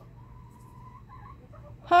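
Faint hen call: one drawn-out note lasting about a second, then a shorter one. A woman's loud exclamation, "¡Ja!", comes near the end.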